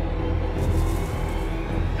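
Background soundtrack music: held notes over a steady low drone.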